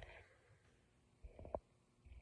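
Near silence: room tone, with a faint low rumble and a single soft click about one and a half seconds in.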